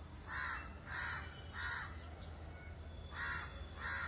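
A bird calling outdoors: three short calls in quick succession, then two more after a pause of about a second.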